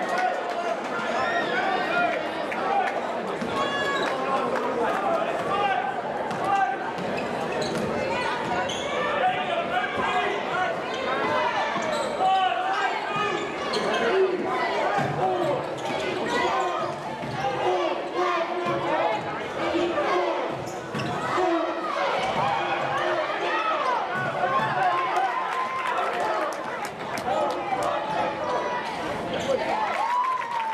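A basketball bouncing on a hardwood gym floor during play, with many clicks and knocks, under steady crowd voices and shouts.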